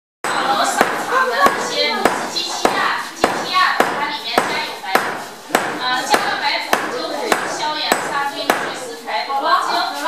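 A silversmith's hand hammer strikes metal on a steel anvil stake in a steady rhythm of about one blow every 0.6 seconds, roughly fourteen blows in all. The blows stop about a second and a half before the end.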